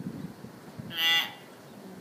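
A caged common hill myna gives one loud, short, harsh call about a second in.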